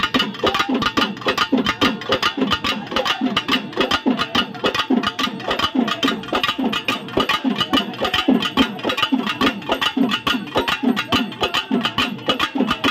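Pambai drums played fast and continuously: rapid stick strokes over repeated deep booms that drop in pitch.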